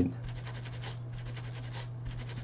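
Cloth rubbing quickly back and forth on a laptop screen's glass panel, scrubbing off leftover adhesive, in a fast even run of scratchy strokes. A steady low hum sits underneath.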